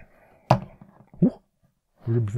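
A single sharp knock about half a second in as a plastic action figure is set down on a wooden tabletop, followed by a short surprised exclamation.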